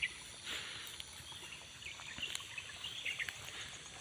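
Faint rural ambience: a steady high-pitched drone of insects with a few brief bird chirps.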